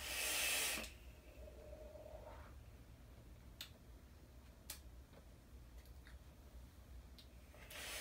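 A draw on a rebuildable tank vape (Kylin RTA on an Aegis mod): a rushing hiss of air pulled through the atomizer's airflow for under a second, followed by a few faint clicks. Another draw starts just before the end.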